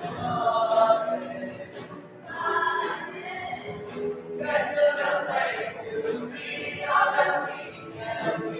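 Middle school choir singing, the phrases swelling louder about a second in, around two and a half seconds, five seconds and seven seconds, with a regular high ticking beat underneath.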